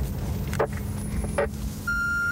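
Steady engine and road rumble inside a moving police patrol car, with two short crackles about half a second apart. A brief, steady radio beep sounds near the end.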